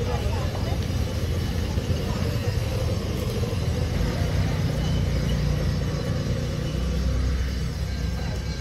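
Night street ambience: a steady low rumble, heavier from about halfway through, under indistinct chatter of people nearby.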